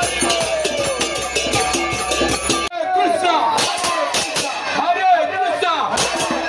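Devotional kirtan: hand cymbals (kartals) strike a steady beat under chanting voices. A little before halfway the sound cuts abruptly, and after the cut many voices call out together over the cymbals.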